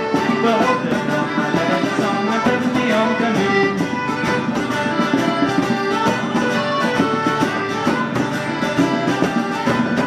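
Live folk band playing an instrumental passage without vocals: accordion carrying the tune over strummed acoustic guitar and a steady percussion beat.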